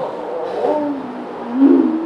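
A man's voice, low and drawn-out, with no clear words: a held, hummed hesitation sound that bends in pitch and rises near the end.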